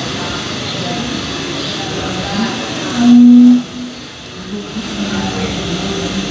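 Indistinct voices over a steady machinery-like noise in a working space. About three seconds in, a single loud, steady tone cuts in for about half a second.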